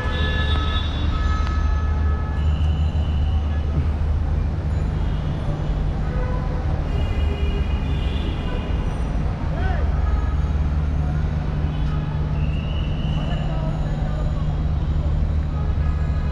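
Dense city traffic din from the streets below the viaduct, with a steady low engine drone and a few short high toots, the clearest about three seconds in and again near thirteen seconds.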